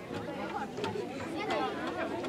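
Crowd chatter: several people talking at once, overlapping and indistinct, with a few light knocks among the voices.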